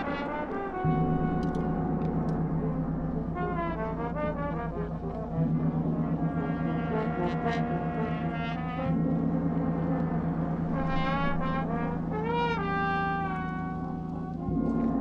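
Brass ensemble of trumpets, trombones and horns playing a fanfare-style piece. A held low note comes in stronger at about 1, 5 and 9 seconds in, under higher horns playing short bending, wavering figures.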